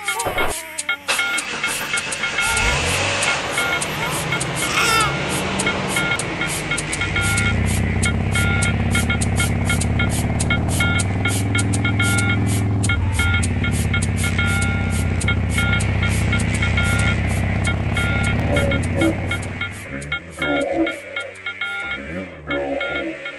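Sound effects over music: fast, regular mechanical clicking with steady high tones, joined about a third of the way in by the low running of a truck engine, which fades out near the end.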